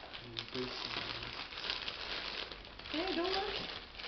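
Gift-wrapping paper crinkling and crackling as hands grip and handle a wrapped present.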